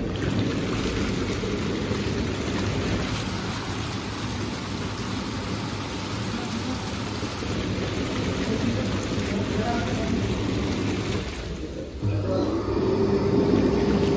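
Whirlpool bathtub's hydro jets switched on at a button press: a sudden start of steady rushing, churning water over the low hum of the pump. About twelve seconds in, the sound dips briefly, then comes back louder with a steady hum added.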